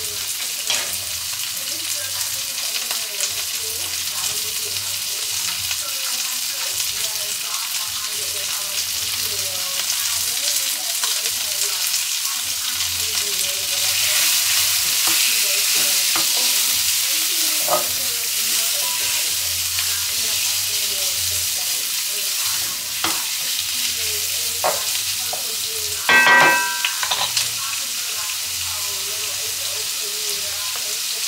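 Pieces of meat sizzling in a frying pan on a gas hob, stirred with a wooden spoon; the sizzle swells for a few seconds around the middle. A brief ringing clink near the end.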